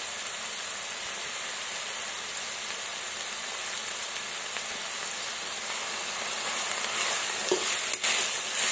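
Chopped onions sizzling in hot oil in a pan, a steady hiss. Near the end the sizzle grows louder as the onions begin to be stirred, with one light knock.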